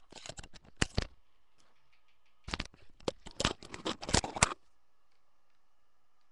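Handling noises: a quick series of clicks and rustles in two bursts, one in the first second and a longer one in the middle, with no playing.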